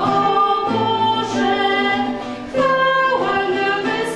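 Polish Christmas carol sung by voices over classical guitar and electronic keyboard accompaniment, with a brief pause between phrases about two and a half seconds in.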